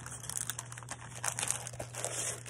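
Clear plastic packaging sleeve on a pack of scrapbook paper crinkling as it is handled and lifted, in soft irregular rustles.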